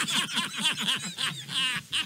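Men laughing, a quick string of short pitched 'ha' sounds.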